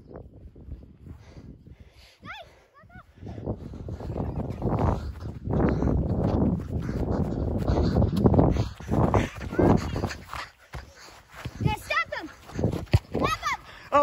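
Wind buffeting the phone microphone and quick rhythmic footfalls on grass as the person holding it runs. Children's high shouts come about two seconds in and again near the end.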